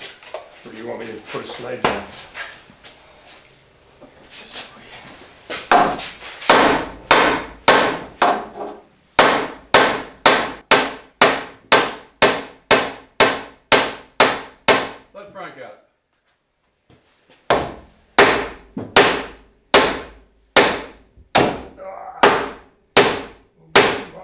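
Two sledgehammers taking turns to drive a long metal rod down through clamped, stacked timbers. A few lighter knocks come first, then steady heavy blows ring out about two a second. There is a short pause past the middle before the blows resume.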